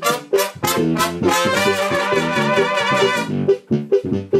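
Trumpets and a trombone of a Mexican banda playing an instrumental brass fill between sung lines: a run of short, sharp notes, then a chord held for about two seconds, then two short notes near the end.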